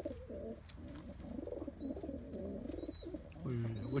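Domestic pigeons cooing in a loft: repeated low, wavering coos, several overlapping, all through.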